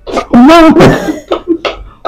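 A person's voice making loud sounds without words: one longer wavering sound about half a second in, followed by several short rough bursts.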